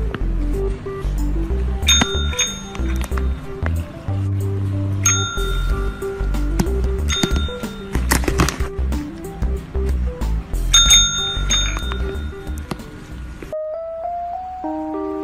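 A green tap-style call bell rung by a cat's paw, ringing five times in all: twice about two seconds in, once around five seconds, and twice near eleven seconds, each ring dying away. Background music with a steady bass line plays throughout.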